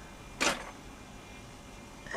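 Low room noise with one brief, soft hiss-like rustle about half a second in.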